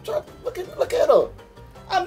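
Background music with a steady low bass beat, and about a second in a person's voice gives a drawn-out exclamation that slides down in pitch.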